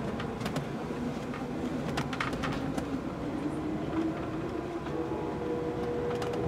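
Amtrak Coast Starlight passenger car running on the rails: a steady rolling rumble with scattered clicks from the wheels and track, and a steady hum that comes in near the end.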